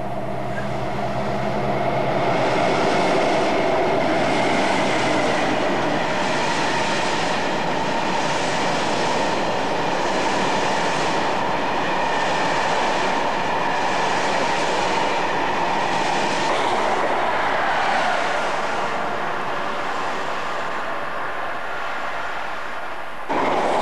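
Long freight train of hopper wagons passing close by. The wheels clatter over the rails in a regular beat about once a second as each wagon goes by, over a steady ringing tone from the wheels and rails that drops in pitch near the end.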